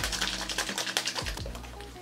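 A small plastic cup of Dr. Jart+ Shake & Shot mask being shaken hard. The thick booster and the liquid ampoule inside are being mixed into a gel, giving a fast, even sloshing rattle of about ten strokes a second. It grows quieter near the end, over background music.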